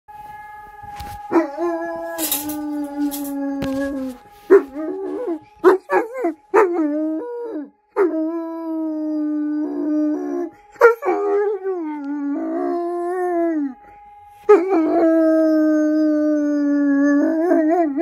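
Black long-coated German Shepherd-type dog (a wolfdog) howling, set off by sirens: three long held howls with shorter, wavering, broken howls between them, breaking into short yips near the end.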